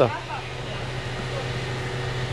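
A steady low mechanical hum over a faint even background hiss.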